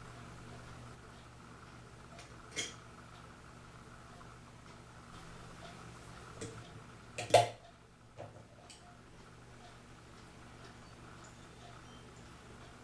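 A few small clicks and taps of small metal clock parts and hand tools being handled on a workbench, over a steady faint hum; one sharp click a little past the middle is the loudest.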